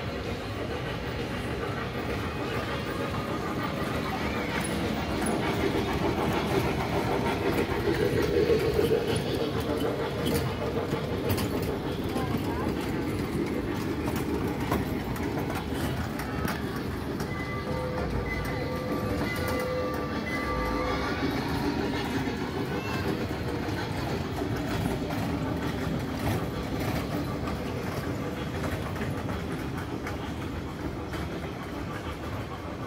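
A small trackless tourist train driving past close by, mixed with background music and voices; the sound is loudest as it passes, and a steady held tone sounds for a few seconds about two-thirds of the way through.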